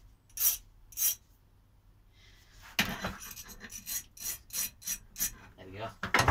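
Hand file rasping the freshly cut end of a small steel bolt to deburr it, so the sharp end won't damage the RC tyres. A few slow strokes come first, then a quicker run of about three strokes a second from about three seconds in.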